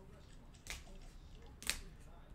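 Trading cards in plastic sleeves and toploaders being handled, with two short sharp plastic swishes about a second apart, the second louder.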